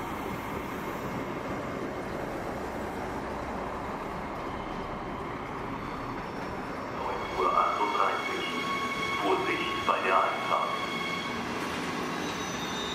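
Steady rail noise of a departing Siemens Desiro HC electric multiple unit (RRX) running away over the station tracks. Voices are heard over it in the later part.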